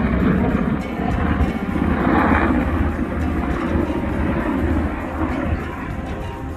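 Irish Coast Guard Sikorsky S-92 search-and-rescue helicopter flying overhead: a steady rumble of rotor and turbine noise with a regular low throb. Music plays over it.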